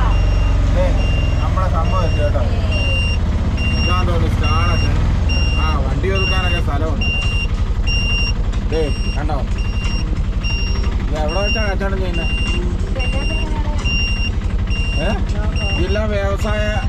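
Auto-rickshaw engine running as it drives, with a high electronic beep repeating about every two-thirds of a second over it.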